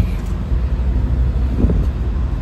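A motor vehicle's engine idling: a steady low rumble.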